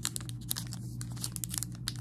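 Clear plastic pin bag crinkling as it is handled and turned over in the hands: a run of small, sharp crackles.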